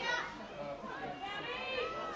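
Faint, high-pitched girls' voices calling and shouting across the pitch during play, with more calls toward the end.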